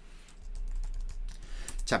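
Typing on a computer keyboard: a quick run of key clicks as a stock code is entered into the trading software, over a low steady hum.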